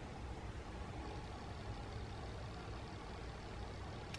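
Faint, steady, low rumbling background noise, engine-like, with no distinct events.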